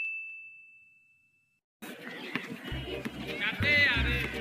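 A single high, bell-like ding sound effect, struck just before, fades out over about a second and a half. After a short silence, outdoor background noise comes in, with low background music near the end.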